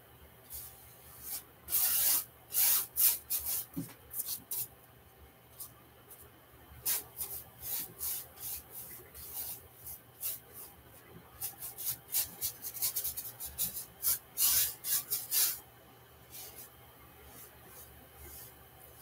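Paintbrush loaded with acrylic paint scraping and swishing across a stretched canvas, in three runs of quick short strokes with brief pauses between them.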